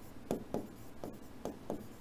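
Stylus writing on a touchscreen whiteboard: a handful of faint, short taps and scrapes as the letters are written.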